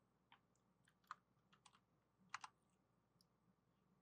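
Near silence with a handful of faint, scattered clicks from a computer keyboard and mouse.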